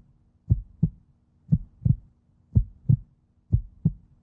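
Heartbeat sound effect used as a suspense cue under a decision countdown: four paired low thumps, lub-dub, about one beat a second.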